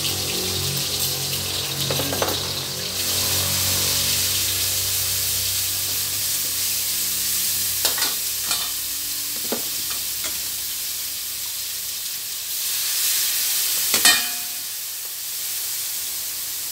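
Shrimp-paste chili dip (nam prik kapi) frying with garlic in hot oil in a metal wok, a steady sizzle as a metal spatula stirs it. A handful of sharp knocks of the spatula on the wok come through, the loudest about 14 seconds in.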